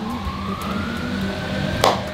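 A siren-like wail: one thin tone rising slowly and then falling away, over a steady low hum, with a single sharp click near the end.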